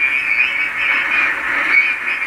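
Receiver static from a Collins KWM-2A ham transceiver playing through its speaker: a steady, narrow, high hiss with faint wavering whistles in it.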